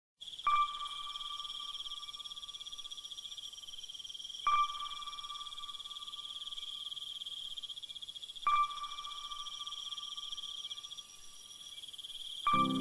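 A steady, high cricket-like trill under a ringing chime tone that is struck three times, about four seconds apart, each ring dying away slowly.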